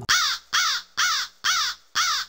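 Crow-cawing sound effect: five identical harsh caws in quick, even succession, the kind laid over an awkward pause for comic effect.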